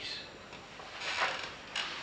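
Chalk writing on a blackboard: two short scratching strokes, the stronger one about a second in.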